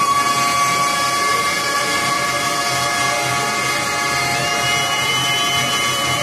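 Harmonium holding a long, steady chord, a reed drone with no rhythm; a higher note joins about four seconds in.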